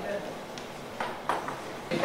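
Low background voices in a room, with two short sharp knocks or taps about a second in.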